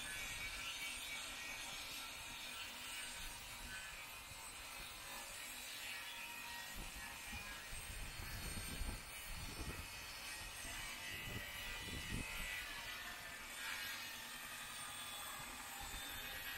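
Electric table saw running steadily while it rips hard, well-seasoned oak boards, with a few low rumbles about halfway through.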